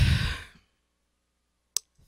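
A woman's sigh, breathed out close to a handheld microphone and fading away within about half a second. A single short click comes near the end.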